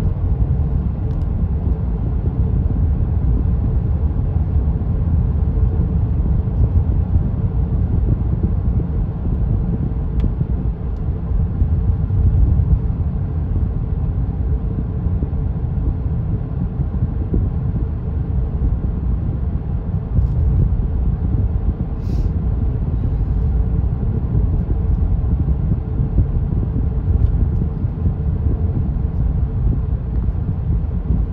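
Steady low rumble of a car driving along a paved road, heard from inside the cabin.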